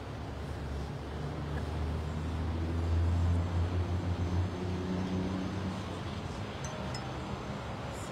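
Low engine rumble of a motor vehicle going by on the street, swelling about three seconds in and fading a few seconds later, over steady traffic noise.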